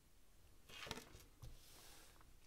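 Near silence, with a faint brush about a second in and a faint tick shortly after as a heart-shaped cardboard oracle card is laid down on a tabletop.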